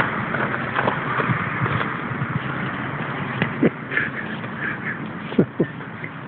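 Footsteps crunching on old, crusted snow, with short knocks and scuffs throughout and a few brief higher squeaks about four seconds in.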